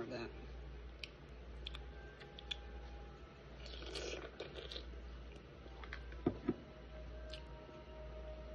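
Faint chewing and crunching of a pickle, with scattered small mouth clicks. There is a short murmur about four seconds in, and two sharper clicks a little after six seconds.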